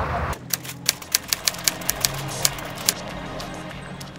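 Typewriter-style key clicks, a sound effect for a caption typing onto the screen: a quick, irregular run of about a dozen sharp clicks lasting about two and a half seconds, over soft background music.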